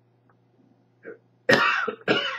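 A man coughs sharply once, about one and a half seconds in, after a second of near quiet.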